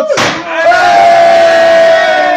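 A sharp bang just after the start, then a loud yell held on one steady pitch.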